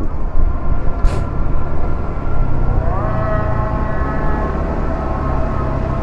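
Yamaha scooter's engine running on the move, with a heavy low wind rumble on the microphone. About three seconds in, the engine's whine rises in pitch and then holds steady. A brief hiss comes about a second in.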